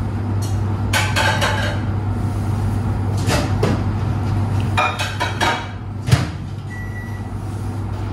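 Newspaper rustling and crinkling in bursts as papier-mâché strips are pressed onto a volcano form, with a sharp knock about six seconds in, over a steady low hum.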